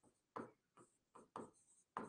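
Faint strokes of a pen writing on a board: a few short, separate scrapes about a second apart.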